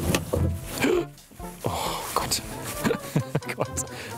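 Background music, with a man's brief wordless vocal sounds.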